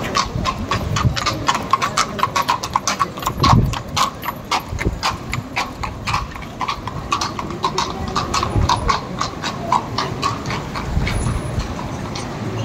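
Steel-shod hooves of a pair of carriage horses clip-clopping on a paved street as a horse-drawn fiaker passes close by, the hoofbeats thinning out in the last few seconds. A low rumble swells underneath a couple of times.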